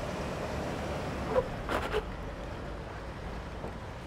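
Toyota Hilux engine pulling the truck up a rock ramp in low range with the rear locker engaged, heard as a steady, noisy drone. A couple of brief, sharper sounds come about one and a half to two seconds in.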